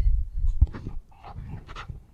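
Low rumble of a phone microphone being handled as a hand reaches across it, followed by a series of short breathy puffs like panting.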